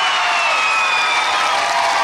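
Football spectators cheering and shouting a goal just scored, many high voices at once, loud and continuous after a sudden outburst.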